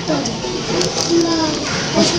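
Indistinct chatter of adults and children talking over one another.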